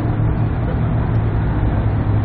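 Big-rig dump truck's diesel engine running at a steady low idle, an even deep rumble with no revving.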